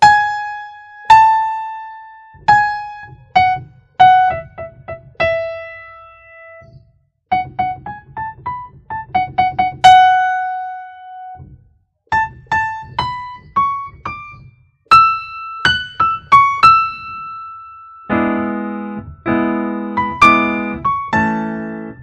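Electronic keyboard playing a single-note melody, quick notes stepping up and down, each struck and then fading; this is the intro's synthesizer line simplified to one note at a time. About eighteen seconds in, left-hand chords join underneath.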